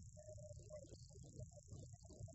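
Near silence: a steady high-pitched hiss over a faint low rumble, with scattered faint, indistinct fragments in between.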